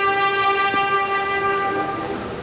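A brass instrument holding one long, steady note of ceremonial military honors music.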